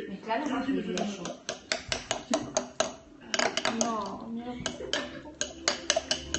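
Metal fork clinking against a glass bowl while mashing and stirring guacamole, a quick run of taps about four or five a second, with a short break about halfway through.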